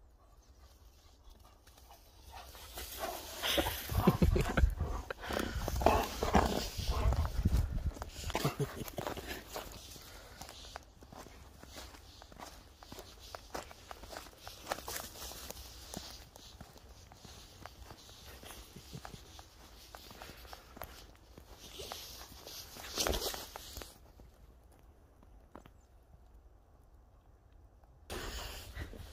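A dog and footsteps moving through snow, crunching unevenly. The sound is loudest a couple of seconds in, with another short burst near the end.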